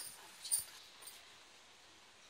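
A faint, low hiss from a covered pan of okra and chicken cooking on the stove, with a couple of short light clicks near the start.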